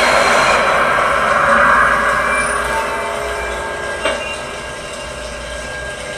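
A shower running: a steady hiss of spraying water that slowly fades, with a faint click about four seconds in.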